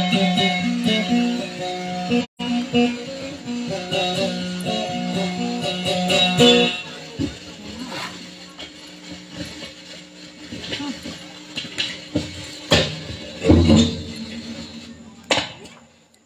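Amplified kutiyapi (two-string boat lute) playing a plucked melody of repeated notes for about the first seven seconds, then stopping. A few scattered knocks follow.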